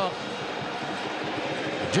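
Steady stadium crowd noise from the stands, an even wash of many voices with no single call or chant standing out.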